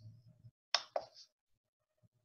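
Two sharp, quick clicks about a quarter second apart, close to the microphone, followed by a fainter third click; before them, a faint low rumble for about half a second.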